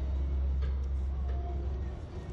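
A low, steady rumble with faint background noise above it.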